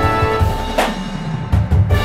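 Marching band show music: held wind chords over low drum hits, with a crash a little under a second in and a quick run of low drum hits near the end.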